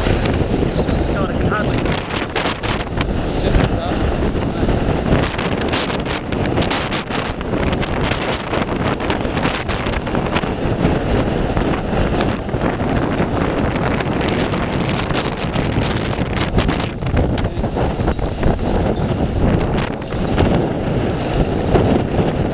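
Hurricane wind buffeting the microphone: a loud, continuous rumbling rush that gusts up and down throughout.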